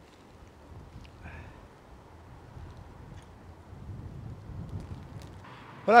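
Low outdoor rumble of wind on the microphone, swelling a little near the end, with a faint short higher sound about a second in.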